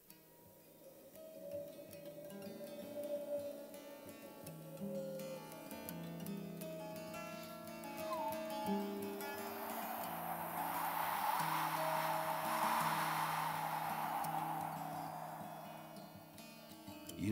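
Twelve-string acoustic guitar fingerpicked, with slow ringing notes overlapping one another. About halfway through, a breathy whooshing hiss swells up over the guitar, becomes the loudest sound, and then fades shortly before the end.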